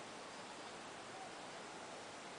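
Faint, steady background hiss of outdoor ambience, with no distinct event.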